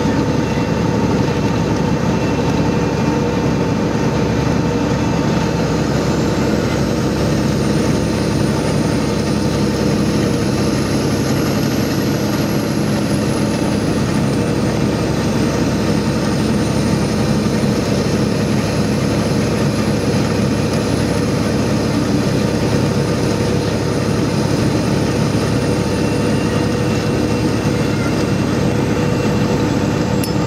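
Heavy truck driving at highway speed, heard inside the cab: a steady engine drone and road noise with a constant hum, and a faint high whine that comes in about six seconds in and slowly rises and falls in pitch.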